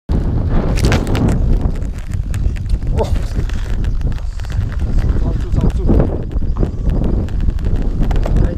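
Wind rumbling on an action camera's microphone, with knocks and scrapes from the camera being handled.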